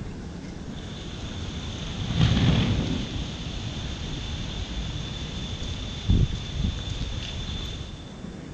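Wind buffeting the microphone over a low outdoor rumble. It swells louder about two seconds in, and there is a short thump about six seconds in. A faint steady high whine runs underneath from about a second in.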